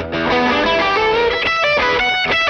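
G&L Custom Shop ASAT electric guitar playing an amplified lead phrase of quick single notes, with string bends and vibrato.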